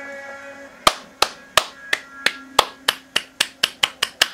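Audio of a music video: a held musical chord fades out, then a run of sharp clicks starts about a second in and speeds up, from roughly three a second to about six a second, over a faint low steady tone.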